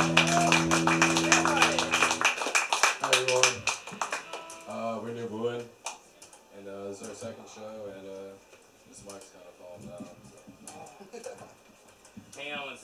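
A live rock band's amplified electric guitars and bass ring out on a final held chord that stops abruptly about two seconds in. A short spatter of clapping follows, then quieter voices talking between songs.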